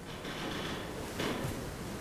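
Quiet room tone with a faint, brief clatter or knock about a second and a quarter in.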